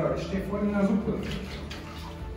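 A man's voice speaking briefly in the first second, not as clear words, over a steady low hum.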